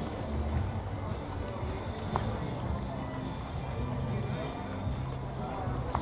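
Background chatter from a street crowd, with an uneven low rumble from a body-worn camera moving as its wearer walks.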